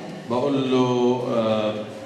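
A man's voice holding one long, drawn-out vowel at a fairly level pitch for about a second and a half, starting a moment in.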